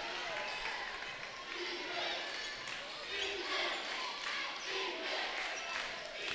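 A basketball being dribbled on a hardwood gym court, under low crowd chatter and players' voices.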